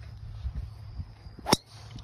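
A golf driver striking a teed ball: one sharp crack about a second and a half in.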